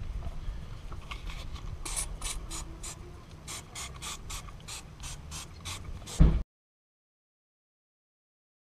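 Trigger spray bottle pumped rapidly, a quick series of short spritzes about four or five a second, starting about two seconds in. A thump near the end, then the sound cuts out.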